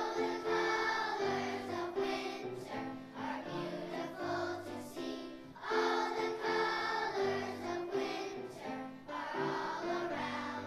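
Children's choir of second graders singing a song together, with an instrumental accompaniment playing held notes underneath.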